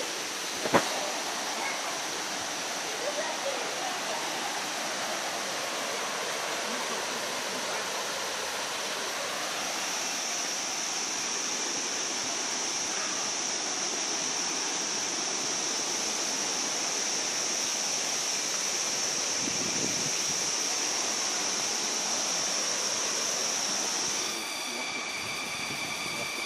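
Steady rush of waterfall water under a constant high-pitched forest insect drone that grows louder about ten seconds in. Near the end it cuts to a quieter ambience with several steady high tones.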